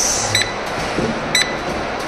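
Exercise machine console beeping: two short high beeps about a second apart, over a steady hiss, counting down the last seconds of a timed cardio workout.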